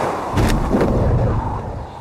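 Sound of a supersonic parachute snapping open: a rushing whoosh, then a sharp bang about half a second in, followed by a deep rumble that fades away.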